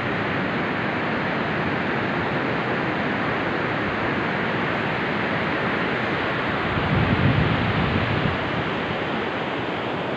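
Steady rushing noise of wind and surf on the beach, with a louder low rumble about seven seconds in that lasts just over a second.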